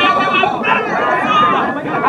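A man's voice shouting loudly in a drawn-out, chant-like way, with other voices chattering around him.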